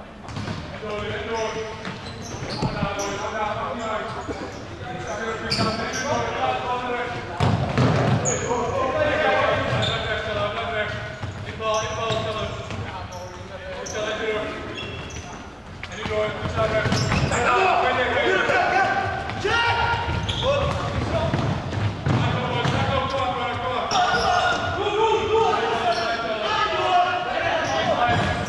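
Indoor futsal play in a large sports hall: several voices calling out across the hall, with thuds of the ball being kicked and bouncing on the wooden floor.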